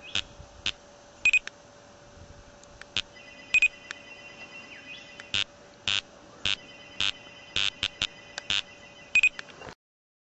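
Electronic beeping from laser speed-gun test gear: a dozen or so short sharp beeps, irregular and faster after about five seconds, over a steady high tone that starts about three seconds in. The sound cuts off just before the end.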